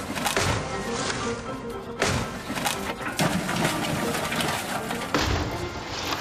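Runaway toy freight trucks crashing and piling into wreckage: a string of clattering crashes and bangs, the sharpest about two seconds in, over background music.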